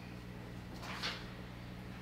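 Quiet room tone with a steady low electrical hum, and one brief soft hiss about a second in.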